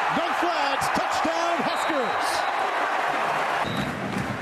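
Football stadium crowd cheering during a long run, with a man's voice calling over the din in the first two seconds. A little before the end the sound cuts abruptly to a different, lower crowd background.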